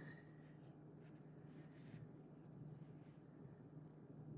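Near silence: faint scratchy rustle of cotton yarn drawn over a crochet hook as double crochet stitches are worked, over a low steady hum.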